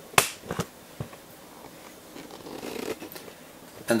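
A sharp click just after the start, two lighter clicks soon after and another about a second in, then faint rustling.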